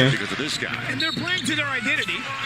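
Basketball game broadcast audio, quieter than the talk around it: a ball bouncing on a hardwood court and a run of short sneaker squeaks from players cutting on the floor.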